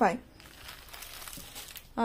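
Faint rustling and crinkling as a folded saree is handled and moved aside.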